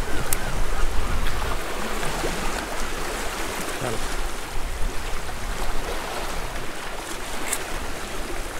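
Sea surf washing over shoreline rocks in a steady hiss, with a low wind rumble on the microphone.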